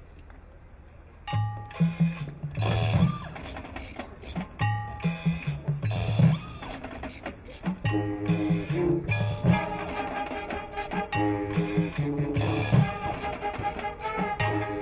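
A high school marching band starts its show about a second in: loud, sharp drum and percussion hits with pitched accents, joined from about eight seconds in by held chords from the winds.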